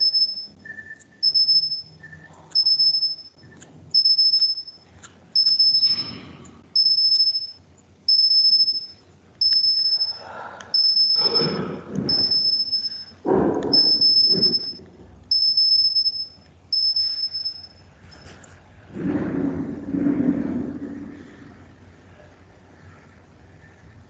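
A high-pitched electronic beep repeating evenly about once every second and a third, some fourteen times, stopping about seventeen seconds in, with muffled noises in between and a longer one near the end.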